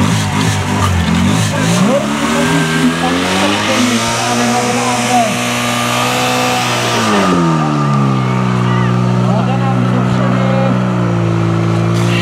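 A portable fire pump's engine revving up over a couple of seconds and held at high revs, then dropping in pitch about seven seconds in and running on steadily at lower revs as it pumps water to the hose lines. Crowd voices and shouting are heard over it.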